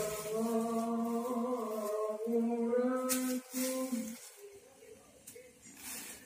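Qur'an recitation (qira'ah): a single voice chanting long, melodic held notes, falling quiet about four seconds in.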